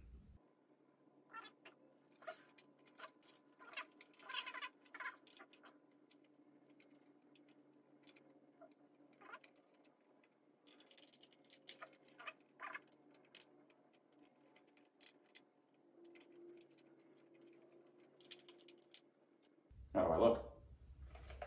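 Near silence broken by faint, scattered clicks and light knocks of plastic helmet parts being handled, thickest in the first few seconds and again around twelve seconds in.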